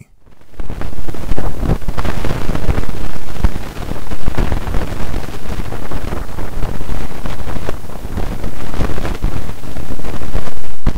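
Audified magnetometer data from the Wind spacecraft playing back as sound: ordinary solar wind turbulence heard as a dense, rough noise, heaviest in the bass. It fades in over the first second and then holds steady, with no clear tones.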